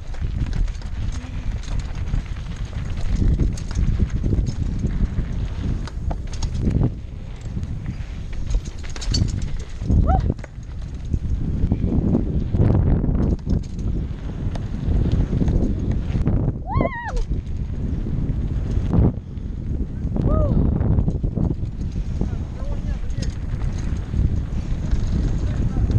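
Mountain bike rattling and bumping down a rough dirt trail, with wind buffeting the camera microphone as a steady low rumble. A few brief pitched sounds rise and fall over it.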